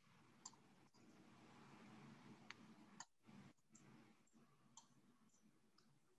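Near silence with a few faint, single computer-mouse clicks as an on-screen graphic is selected, resized and dragged.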